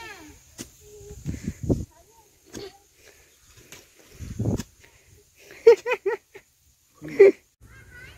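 Hand hoe chopping into dry soil, with dull thuds about a second and a half in and again about four and a half seconds in. Later come the loudest sounds: a quick run of short high-pitched calls, and one more near the end.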